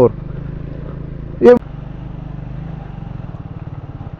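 Triumph 400 motorcycle's single-cylinder engine running at low, steady revs with an even pulsing thump while riding a rough dirt track. A brief voice sound comes about one and a half seconds in.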